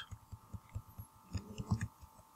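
Faint computer keyboard keystrokes: soft low taps several times a second, with a few lighter clicks near the end, over a faint steady hum.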